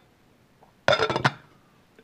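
Glass slow-cooker lid set down onto the crock, a quick rattle of clinks about a second in, with a little ringing after.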